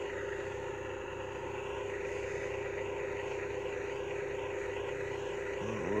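A steady engine hum at one constant pitch, running unchanged throughout.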